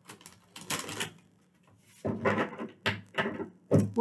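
Tarot cards being shuffled by hand: quick papery clicks and slides, a short pause about a second and a half in, then a denser run of shuffling.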